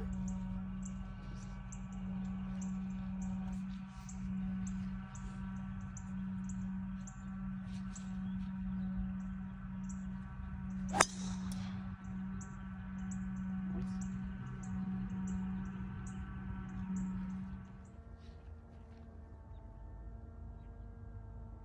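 A metal-headed golf driver strikes a ball off the tee with one sharp, loud crack about eleven seconds in. Under it runs a steady low hum with faint high ticks, and the hum drops away about two seconds before the end.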